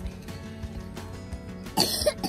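A toddler's single short cough near the end, over quiet background music. It is his lingering cough from an illness his mother calls croup-sounding, still there but milder.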